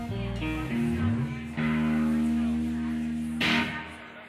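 Electric guitar playing a few single notes, then a chord held for almost two seconds. A sharp, noisy hit on the strings comes about three and a half seconds in, and the sound then fades.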